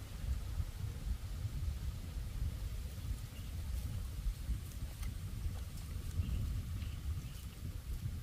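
Wind buffeting the microphone, a continuous low rumble that rises and falls, with a few faint mouth clicks from chewing.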